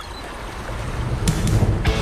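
A rushing whoosh of noise swells in loudness, then upbeat music with a steady drum beat comes in about a second and a half in.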